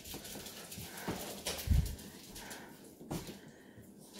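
Household handling sounds: a door swung shut with one dull, low thump about halfway through, and a few light sharp knocks before and after it as a cardboard box is handled.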